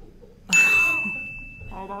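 A bell-like ding struck once about half a second in, a single high tone that rings on and fades slowly. It is an edited-in sound effect marking a laugh point scored.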